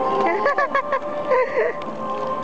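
A toddler's high-pitched squeals and laughing calls: a few short ones about half a second in, then a longer, wavering one past the middle.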